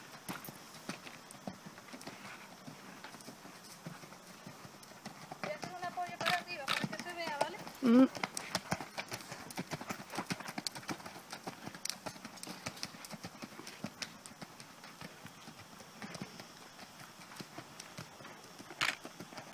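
Hoofbeats of a ridden horse trotting on arena sand, a dense run of soft clip-clops. A voice is heard briefly about six to eight seconds in, the loudest moment.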